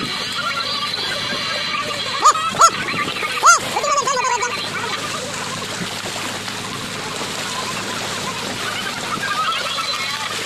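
Water splashing and churning as a dense shoal of fish thrashes inside a purse-seine net drawn up against the boat. Three short, sharp high-pitched calls cut through between about two and three and a half seconds in.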